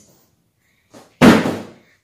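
A faint click, then a single loud thump a moment later that dies away within half a second.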